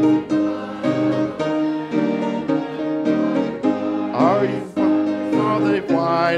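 A church congregation singing a gospel hymn chorus, led by a man's voice, with piano chords struck in a steady beat beneath.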